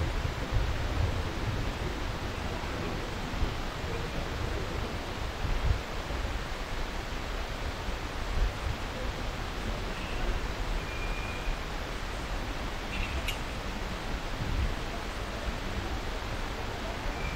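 Steady background hiss and hum of a large airport terminal hall, with low rumbles and a couple of faint short beeps and a click in the second half.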